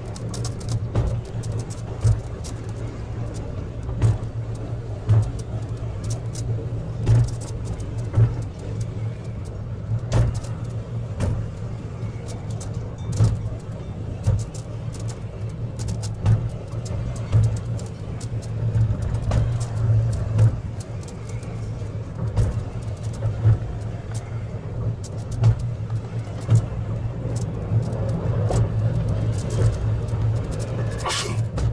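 Stanserhorn funicular car running along its track: a steady low rumble with a sharp clack roughly every second or two, which grows slightly louder near the end.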